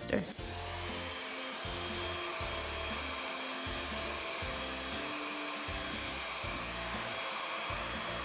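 Dustbuster handheld vacuum motor running steadily, a continuous whirring hiss, over background music.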